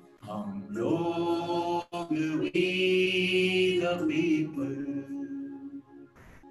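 A man and a woman singing a Hindi song together without accompaniment, holding long drawn-out notes. The singing is strongest through the middle and weakens toward the end.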